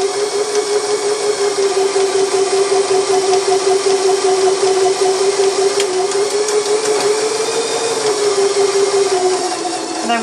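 Elna eXplore 340 sewing machine sewing a buttonhole: its motor runs at a steady speed with the needle stitching rapidly. The pitch rises a little about seven seconds in, then it slows and stops near the end, at the end of the buttonhole's first side.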